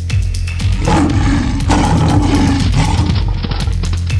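Background music with a steady beat, with a big-cat roar sound effect laid over it from about a second in until just past three seconds.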